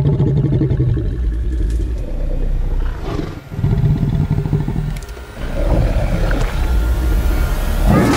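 Large film creature growling deeply in three long stretches, with two short breaks in between.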